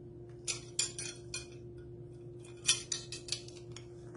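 Plastic measuring spoons on a ring clicking against each other and a spice jar as they are handled, in two short runs of quick clicks about two seconds apart.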